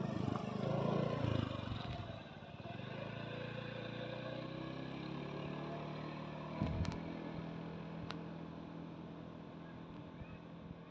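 A motor scooter's small engine passing close, loudest in the first two seconds, then a steady engine hum that carries on as it moves off. A few brief clicks about seven seconds in.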